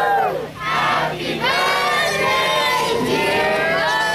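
A crowd of many voices shouting and cheering together, with long held calls that overlap. The sound dips briefly about half a second in and again around a second in.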